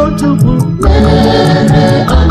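Catholic church song sung by a choir over a steady beat and bass. The backing thins out briefly about half a second in, then the full band comes back.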